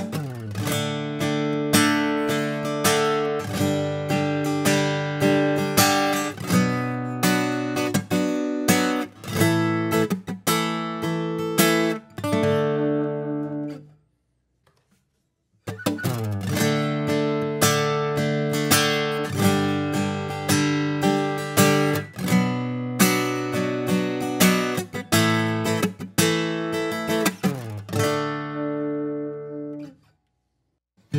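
Acoustic guitar recorded through its pickup line and a Neumann KM184 condenser microphone, playing a plucked passage of single notes and ringing chords. The same take is heard twice, with a short silence about halfway through, for an A/B comparison of an ordinary XLR cable against a Mogami Gold XLR cable.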